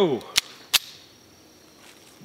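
Two pistol shots from a Beretta 81 chambered in .32 ACP, sharp cracks fired in quick succession a little under half a second apart.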